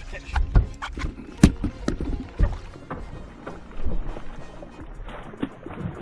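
Sharp knocks and thumps on a bass boat's deck while an angler fights a hooked largemouth bass, the strongest about a second and a half in. Near the end the bass splashes at the surface beside the boat.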